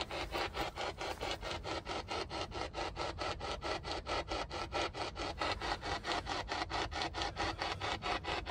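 P-SB11 spirit box rapidly sweeping through radio stations: choppy radio static that cuts in and out about five or six times a second, steady throughout.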